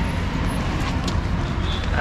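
Auto-rickshaw engine running steadily, a low rumble with road and air hiss, heard from the open passenger compartment.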